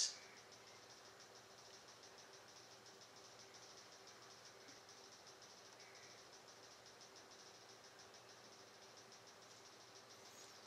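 Near silence: faint room tone with a steady low hum and a faint, evenly pulsing high hiss.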